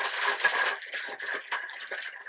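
A hand rummaging in a cloth-lined wire basket: fabric rustling and small clear plastic capsules rattling and clicking against each other. The rustle is dense for the first second, then breaks into scattered clicks.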